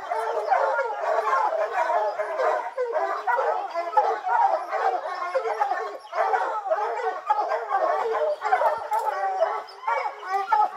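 A pack of hunting hounds baying without pause, several dogs barking and bawling over one another, the sound of hounds holding a bear at bay in a rock hole.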